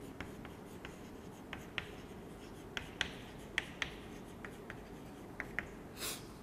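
Chalk writing on a chalkboard: faint, irregular short taps and scratches as letters are written in quick strokes.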